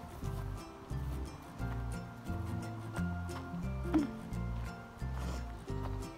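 Background music with a steady, rhythmic bass line.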